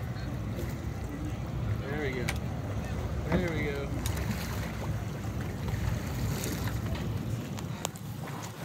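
Steady low rumble of a boat's engine mixed with wind on the microphone. Short voice calls cut in twice, about two and three seconds in, the second the loudest moment.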